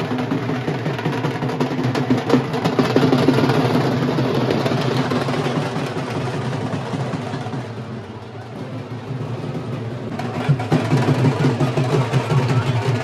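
Dhol drumming in a steady run of quick strokes. It drops away briefly about eight seconds in and comes back louder near the end.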